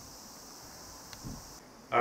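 Quiet room tone with a steady high hiss, one faint click and a soft low thump a little past halfway. The hiss drops out shortly before the end.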